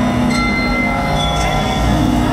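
Percussion solo through an arena PA: layered, held, bell-like ringing tones over a low drone, with new pitches entering about a third of a second in and a few light strikes.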